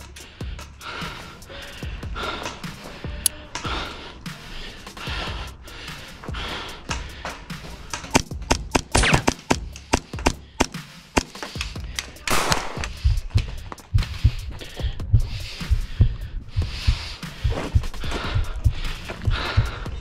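Background music under intermittent sharp pops of airsoft gunfire, bunched about eight to ten seconds in and again around twelve seconds, with repeated dull low thumps through the second half.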